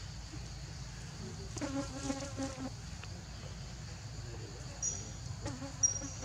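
Steady high-pitched buzz of a forest insect chorus. A short pulsing call rises over it about two seconds in, and a few thin high notes and a sharp click come near the end.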